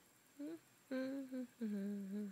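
A woman humming a few short, level notes in a low voice, with the longest note about a second in.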